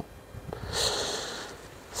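A man's breath drawn in between sentences: a short, soft hiss of air about half a second long, near the middle.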